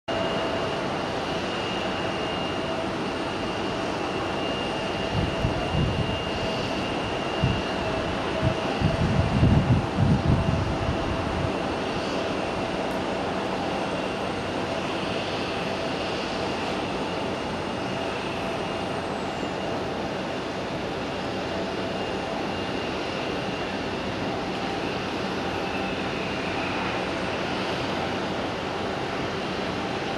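Bombardier CRJ200's twin rear-mounted GE CF34 turbofans on final approach to landing: a steady jet noise with a high whine held throughout. A few low bumps sound partway in.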